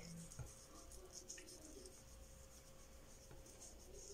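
Faint, soft rubbing of fingertips massaging a foamy cleanser over wet facial skin, in repeated strokes about twice a second, over a low steady hum.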